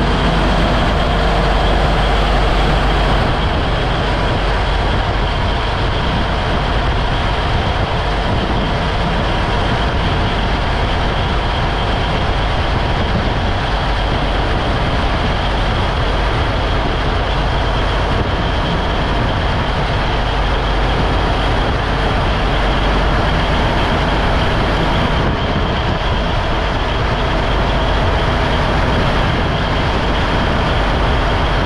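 Fishing trawler's inboard diesel engine running steadily, heard up close in the engine compartment as a loud, even drone with a low hum.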